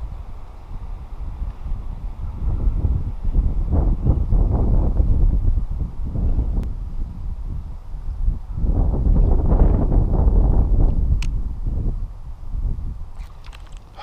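Wind buffeting the microphone in gusts: a low rumble that swells and eases, with two long, stronger gusts.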